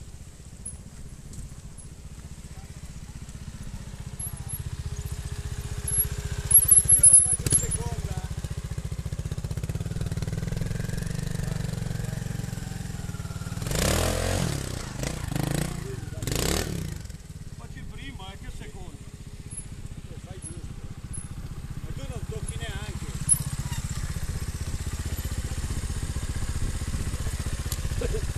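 Trials motorcycle engine running, with a few sharp knocks about a quarter of the way in and several short bursts of revving about halfway through.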